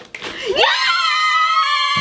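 A child's high-pitched scream of excitement, rising about half a second in and then held.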